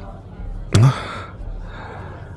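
A man's short, breathy gasp about three-quarters of a second in, over a faint, steady low background hum.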